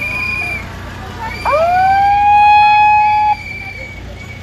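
A handheld megaphone's siren: a quick rising wail that holds one pitch for about two seconds and cuts off suddenly. Shorter, high steady whistle-like tones sound around it.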